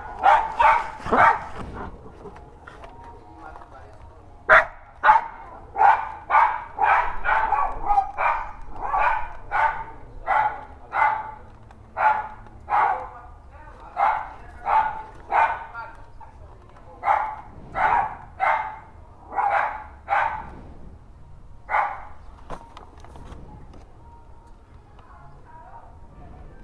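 Small dogs barking, a long run of sharp, evenly spaced barks at about two a second that starts a few seconds in and stops near the end.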